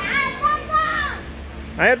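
A young child's high-pitched voice, a drawn-out squeal or call lasting about a second. Near the end a woman calls "Ayo".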